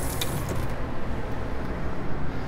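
Sink faucet water running over a ring being rinsed, shut off about half a second in. A low steady hum remains after it.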